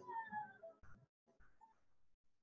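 A faint voice-like pitched sound gliding down in pitch over the first second, then fading to scattered faint sounds.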